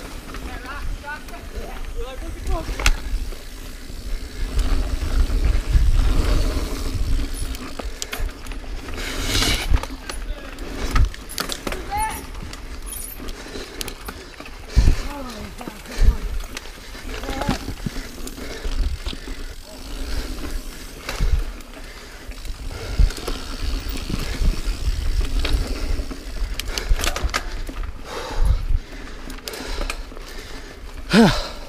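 Full-suspension mountain bike (Niner Jet 9 RDO) ridden fast over dirt singletrack: a continuous tyre and wind rumble, broken by frequent sharp knocks and rattles as the bike hits roots and rocks.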